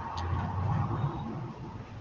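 A car driving along a road: a steady low rumble of engine and road noise, heard from inside the car.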